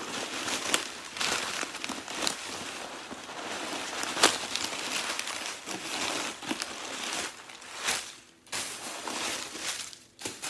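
Crumpled stuffing paper rustling and crinkling as it is pulled out of a handbag, with scattered sharp crackles and a brief pause near the end.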